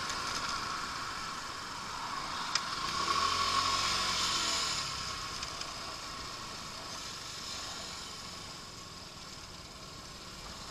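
Lance Havana Classic 125 scooter's small single-cylinder four-stroke engine running while riding in traffic, mixed with wind and road noise. The sound swells a few seconds in and grows quieter toward the end as the scooter slows behind cars.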